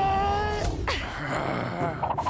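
A drawn-out, wavering wordless vocal cry, like a whine, with a brief sharp noise about three quarters of a second in.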